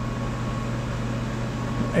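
Steady low machine hum with no distinct events.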